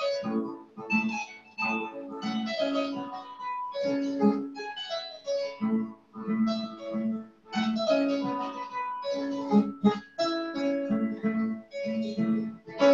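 West African harp (kora) played solo: plucked strings in a repeating cycle of low bass notes under runs of higher melody notes, with no singing.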